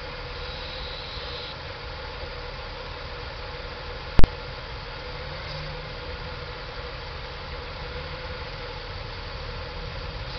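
Buick LeSabre's 3800 V6 idling steadily while Seafoam is drawn into the intake through a vacuum line. A single sharp, very loud crack cuts through about four seconds in.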